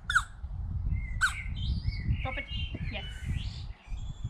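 Small birds chirping and calling: two short falling calls near the start and about a second in, then a run of mixed chirps, over a steady low rumble.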